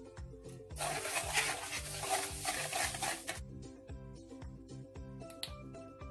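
Background music with a steady beat, and for about two and a half seconds, starting about a second in, eggs and sugar being beaten in a bowl.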